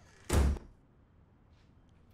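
A door being shut: one short, deep thud about a third of a second in.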